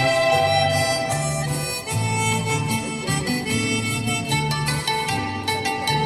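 Instrumental backing music through a PA speaker: a sustained, reedy lead melody over plucked guitar and a pulsing bass line.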